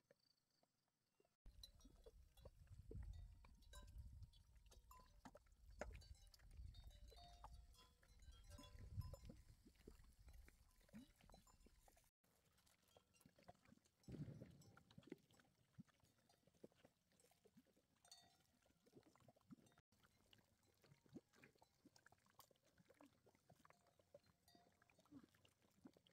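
Near silence: faint outdoor ambience with a soft low rumble and scattered small clicks and rustles, one low thump about halfway through, and abrupt changes in the background where the shots change.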